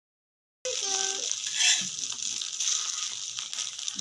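Omelette frying in a hot oiled pan, sizzling, while a metal spatula scrapes under it and turns it. The sound cuts in suddenly after a brief silence at the start.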